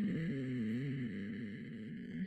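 A woman humming a long, unbroken 'hmm' with her mouth closed, the pitch wavering down and back up.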